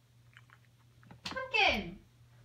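A person's short wordless vocal sound near the end, sliding down in pitch, after a few faint mouth clicks. A faint steady hum runs underneath.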